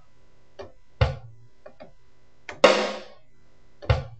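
Sampled drum kit from the SampleTank software instrument playing a sparse beat. A deep kick hit comes about a second in and again near the end, with a louder hit with a ringing, noisy decay in between and a few light ticks.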